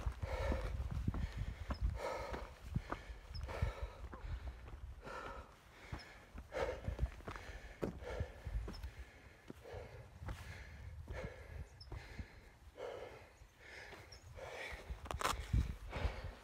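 Footsteps crunching on a dirt and gravel trail, about one a second, with the walker's breathing and a low rumble of wind on the microphone.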